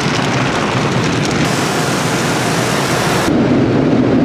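Automatic tunnel car wash heard from inside the car's cabin: water spray and soft-cloth wash material beating on the windshield and roof in a loud, steady rush like heavy rain. Near the end the hiss drops away and a deeper rumble takes over.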